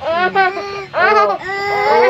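A baby crying out in high, wordless cries: a few short calls that rise and fall, then a longer held cry near the end.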